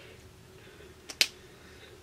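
A sharp click a little over a second in, with a fainter click just before it, over faint room noise.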